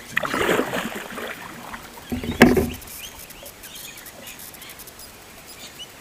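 Kayak paddle strokes splashing in the water, two in the first three seconds, the second ending in a sharp knock. Then only faint water lapping.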